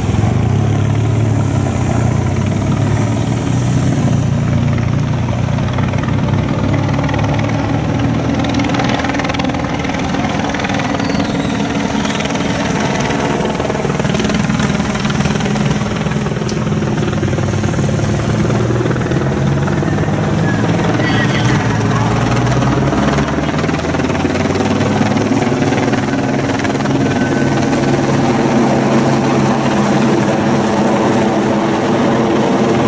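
Steady engine drone of a race helicopter overhead, mixed with race escort motorcycles and the passing bunch of road racing bicycles.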